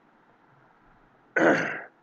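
A man clearing his throat once, a short rasping burst about a second and a half in, after a quiet pause.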